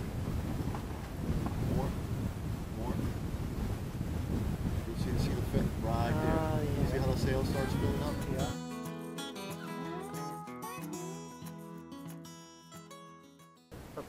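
Wind rushing over the microphone and water washing along a small sailboat's hull while it sails with the jib filled, with faint voices under it. About eight and a half seconds in this cuts off sharply to background music, which fades out near the end.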